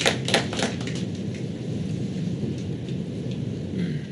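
Handling noise close to a microphone: a few sharp knocks in the first second, then a steady low rustling that stops near the end.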